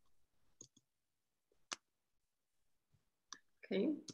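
Three faint, sharp clicks of a computer mouse, spread out with the loudest a little under two seconds in, followed by a spoken 'okay' near the end.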